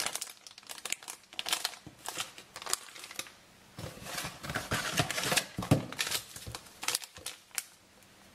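Plastic food packaging and a foil sachet crinkling in irregular bursts as they are handled, with a short lull about three seconds in and the busiest crinkling in the second half.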